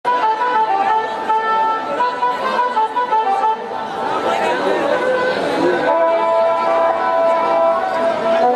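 Live jatra band music: a melody instrument plays a tune of short held notes, settling on one long note near the end, with audience chatter underneath.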